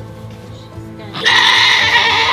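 A Nigerian dwarf goat doe in labor lets out one loud bleat, about a second long, starting just past halfway, as she pushes out her kid.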